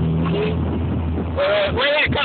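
Car engines idling with a low, steady hum, heard from inside a car's cabin while stopped before a drag launch. Voices come in over it in the second half.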